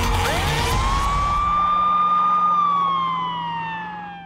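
Siren sound effect in a news programme's title sequence. A single wailing tone sweeps up within the first second, holds, then slides down and fades out. Underneath, a low steady hum sounds, and the crashing tail of the title music fades in the first second and a half.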